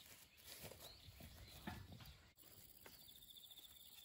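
Near silence outdoors: faint soft footsteps on a grassy path, and from about three seconds in a faint, high, rapidly pulsing insect trill.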